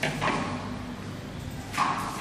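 Low room noise with two brief rustles, a faint one at the start and a louder one near the end: a hand sliding across a sheet of paper.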